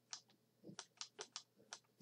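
Several faint, irregular clicks of a stylus tapping on a pen tablet while handwriting.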